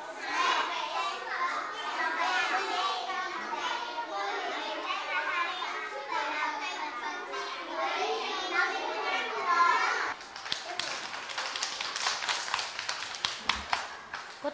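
Many young children reading a text aloud at once in small groups, their voices overlapping. About ten seconds in the reading stops and the class claps hands for a few seconds.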